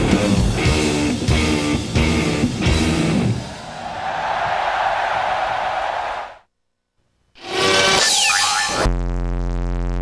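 Live rock band (drums, electric guitar and bass guitar) playing loud rhythmic closing hits. After about three seconds this gives way to a sustained noisy wash, which cuts off suddenly. After a short silence comes a second of other sound, then a steady buzzing hum near the end.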